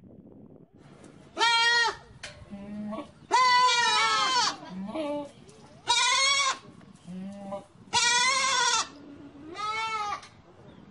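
Goats bleating repeatedly: five loud, high, drawn-out bleats roughly every two seconds, with softer, lower calls in between.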